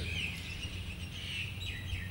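Birds chirping faintly in the background, short high calls repeating, over a steady low hum.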